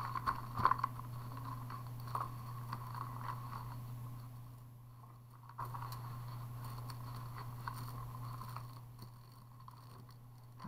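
Strands of glass beads clicking lightly against one another and the table as they are handled and laid out, with scattered small clicks over a steady low hum.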